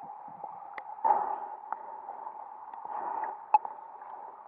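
Stream water heard through a submerged camera: a steady, muffled rush of current that swells about a second in and again near three seconds, with a few sharp clicks, the loudest just past three and a half seconds.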